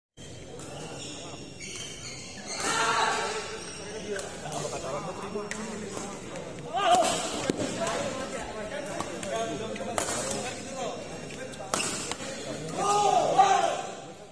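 Badminton doubles rally: sharp racket strikes on the shuttlecock at irregular intervals, a handful in all. Loud voices come in around three seconds in, around seven seconds in, and again near the end.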